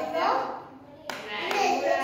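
Voices speaking briefly, with a single sharp clap-like smack about a second in.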